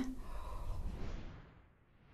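A person breathing out heavily in a long, sigh-like exhale that fades away over about a second and a half, as the mouth burns from hot chili.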